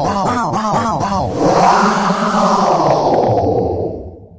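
Voice-like sound effect on the soundtrack: a tone swooping up and down about five times a second for the first second, then in broader, slower swells, with echo, dropping away at the end.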